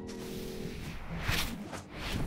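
Cartoon soundtrack: a held music chord fades out in the first part, then two short swishes come about a second and a half in, half a second apart.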